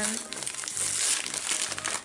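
Paper shopping bag rustling and crinkling as a bath bomb is taken out of it.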